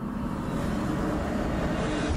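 Dramatic sound-effect swell for a TV drama reveal: an even rushing noise that builds slowly.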